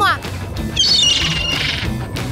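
Cartoon seagulls squawking in a harsh, high chatter from under a second in, over background music.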